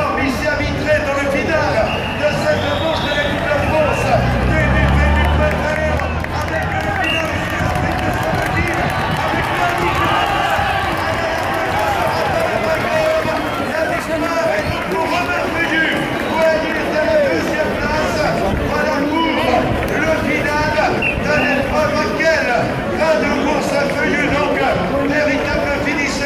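A man's race commentary over public-address loudspeakers, with crowd chatter around it.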